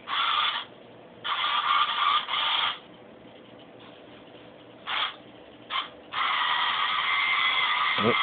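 Small DC drive motors of a homemade wheeled robot whirring in stop-start bursts as it moves back and forth under sensor control, then running without a break for the last two seconds or so as it spins.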